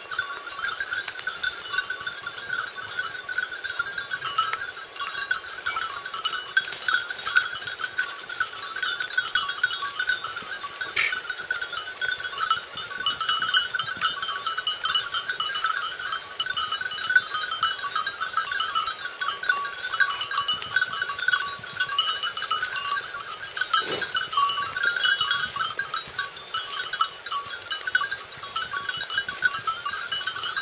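Small collar bells on a pack of Porcelaine hounds jingling without pause as the dogs search for a hare's scent.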